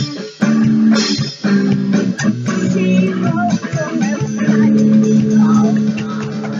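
Electric guitar strummed hard in loud, held rock chords, with a boy singing along over it.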